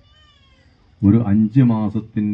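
A man speaking into a microphone over a PA system, starting about a second in. Just before him comes a brief, faint, slightly falling high cry.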